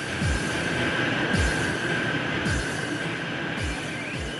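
Motor-driven spinning-sphere model of Earth's core, its outer shell of molten sodium turning at speed, running with a steady high whine over a machine rumble. Low booms of background music repeat about once a second underneath.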